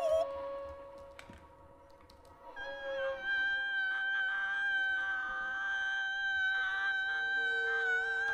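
Free-improvised music: a sung note ends right at the start, and a faint held tone fades to near quiet with a couple of soft clicks. About two and a half seconds in, a violin enters with one long, high bowed note with a slight waver, and a lower held tone joins it near the end.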